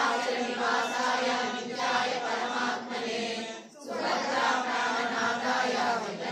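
Hindu mantra chanting: voices reciting a steady, pitched chant during a temple lamp offering, with a short break for breath about two-thirds of the way through.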